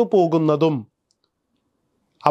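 A man's voice reciting in a chanted, held tone for under a second, then cut off to dead silence for the rest.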